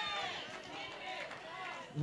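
Faint voices echoing in a large hall, the congregation answering between the preacher's shouted lines.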